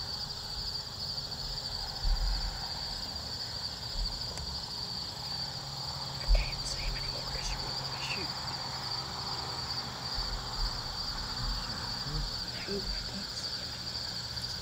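Steady high-pitched chorus of insects chirping in an evening field, with a few dull low thumps, the loudest about six seconds in.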